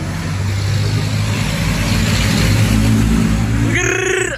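Motor vehicle engine running close by with a steady low hum, the road noise swelling and fading as it passes.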